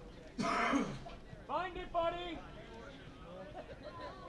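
Men shouting across a soccer field, with no clear words: a short harsh shout about half a second in, then a longer pitched call about a second later.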